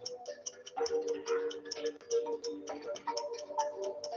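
Quiz-game background music: sustained mid-pitched notes over a fast, even ticking.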